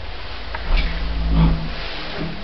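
Lift car and its drive humming and rumbling as the car arrives and levels at a floor. The hum swells about a second in and fades near the end, with a couple of faint clicks.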